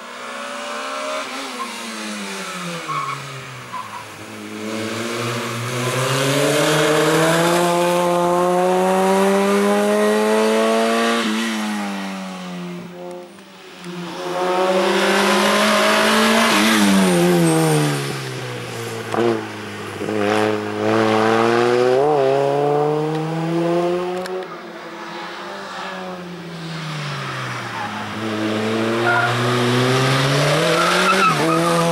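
A racing hatchback's engine revving hard through a cone slalom. Its pitch climbs and drops again and again as the driver accelerates and lifts between the gates, with tyres squealing at times.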